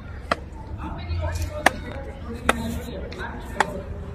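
Four sharp smacks, each a single short hit about a second apart, the second the loudest, over a steady low rumble and faint murmuring voices.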